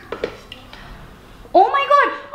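A few faint clinks and taps, then about one and a half seconds in a toddler's loud, high-pitched exclamation that rises and then falls in pitch.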